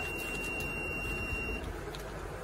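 Digital particle filling machine's buzzer giving one long, steady, high beep as a fill cycle completes; it cuts off about one and a half seconds in. A low machine hum runs underneath.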